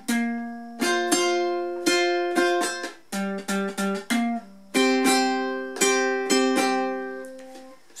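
Ukulele picked in short phrases around a C chord, thumbed bass notes and a few melody notes and C fifths, each phrase struck and left to ring and fade before the next.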